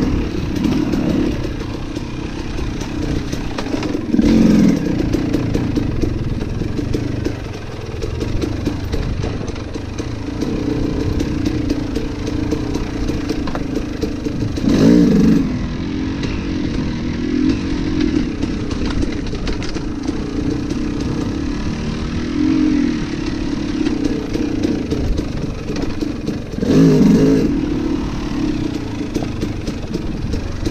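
Dirt bike engine running steadily on the trail, with short bursts of throttle about four, fifteen and twenty-seven seconds in.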